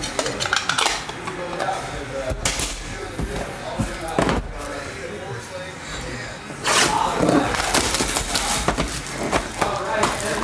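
Hands handling a hard plastic card case and a cardboard card box: scattered clicks and clatter, getting busier and louder with rustling from about two-thirds of the way in.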